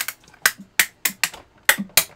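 Hand-cranked Sizzix Big Shot die-cutting machine pressing a magnetic platform of letter dies and a cutting pad through its rollers, giving a run of sharp, irregular snaps and cracks, several a second. This snap, crackle, pop is normal for a Big Shot cutting.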